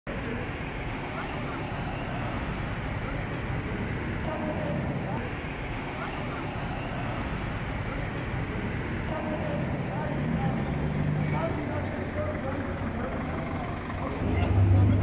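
Street ambience: steady traffic and vehicle noise with indistinct voices of a crowd of bystanders.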